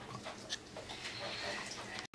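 Lemon half being pressed and twisted by hand on a plastic citrus juicer: faint, with a few small clicks.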